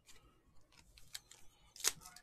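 Baseball trading cards handled and flicked against each other, with faint light clicks, then one sharp, louder crackle near the end as a foil-wrapped card pack is taken up.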